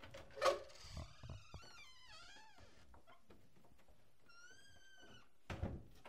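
An interior door being opened. A sharp click from the knob and latch is followed by a long, wavering creak from the hinges that slides down in pitch, then a shorter, higher squeak. A dull knock comes near the end.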